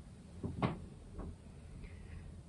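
A few faint short clicks and knocks: two close together about half a second in, and a softer one just after a second.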